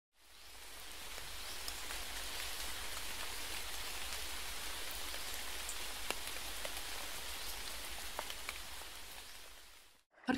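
Steady rain falling on leaves, with scattered ticks of single drops; it fades in over the first second and fades out near the end.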